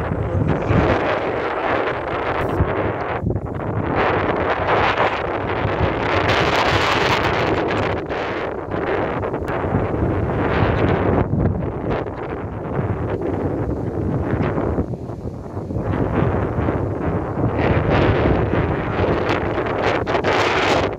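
Wind buffeting a phone's microphone outdoors: a loud, steady rushing noise that swells and eases in gusts.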